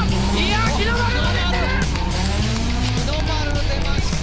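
Soundtrack taken from a drifting video: a drift car's engine running, with Japanese commentary voices over background music.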